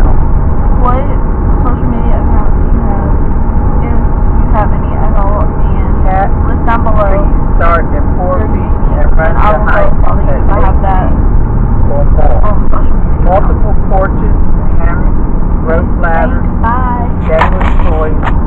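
Steady low road and engine rumble inside a moving car's cabin, with voices talking over it.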